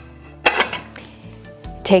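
A clear glass plate clinks once on a countertop about half a second in as it is turned over and set down, over soft background music.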